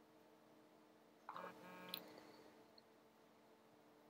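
Near silence: faint steady room hum, with a brief faint tone about a second in that ends in a small click.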